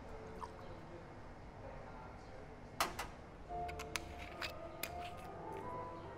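Quiet background music with a few sharp clicks and clinks of glassware and a steel jigger being handled on a bar counter, starting about three seconds in.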